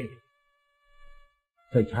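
A voice trails off, then a short pause in which only faint, thin steady high tones linger and fade, and a voice starts again near the end.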